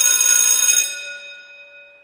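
A bright, bell-like chime holding a steady ringing tone, then dying away over the last second.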